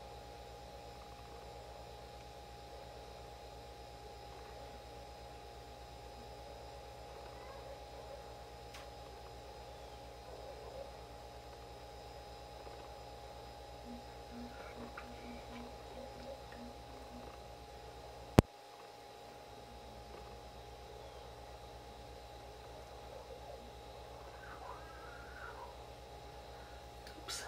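Quiet room tone with a steady low hum, a few faint soft sounds, and one sharp click about eighteen seconds in.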